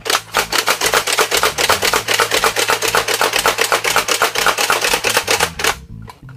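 Buzz Bee Air Warriors Ultra-Tek Sidewinder foam-dart blaster being slam-fired rapidly: the priming handle is pumped back and forth, and each pull launches a dart. This gives a fast, even run of plastic clacks that stops shortly before the end.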